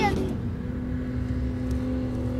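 Engine of a 4x4 SUV held at steady high revs as it drives up a sand dune, heard from a distance as an even hum over a low rumble.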